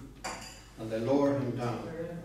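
A short clink near the start that rings briefly, followed by a man's voice saying a few words.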